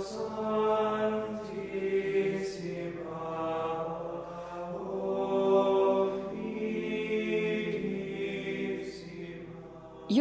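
Intro music of sung chant: long, held vocal notes that change pitch only a few times and fade near the end.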